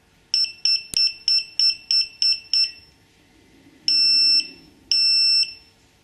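AntiLaser Priority laser jammer's electronic beeper sounding about eight short beeps, roughly three a second, then two longer beeps of about half a second each. The beeps follow entry of a service code and accompany the switch to privacy mode.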